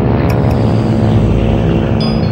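A steady, loud engine drone with an even hum and low rumble, the kind of sound laid over archival aircraft and ship footage.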